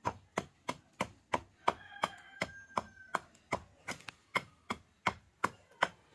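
Small hatchet chopping at a wooden stick held upright on a wooden block, shaping a masher handle: quick, evenly spaced blade-on-wood strokes, about three a second.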